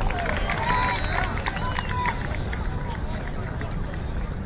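Lacrosse players on the field shouting short calls to each other, amid scattered sharp clicks, over a steady low background rumble. The shouts and clicks thin out after about two and a half seconds.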